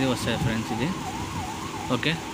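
A siren-like tone wavering up and down about three times a second, stopping near the end, with a low voice murmuring in the first second.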